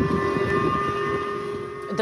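Civil-defence warning sirens sounding a ballistic missile alert: a steady chord of several held tones over low rumbling noise.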